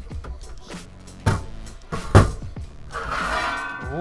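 Sheet-metal lid of an Antminer S3 bitcoin miner being worked loose and lifted off its case: a few knocks, with a louder clunk about two seconds in, then a scraping, rattling stretch near the end.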